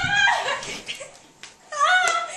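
A girl's high-pitched screams during rough play: one trails off in the first half-second, and another starts near the end.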